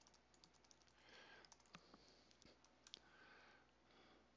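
Faint typing on a computer keyboard: a run of light, irregular key clicks.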